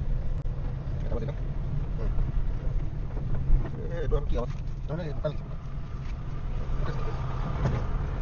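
Steady low rumble of a car driving, heard from inside the cabin, with indistinct voices coming over it around the middle and near the end.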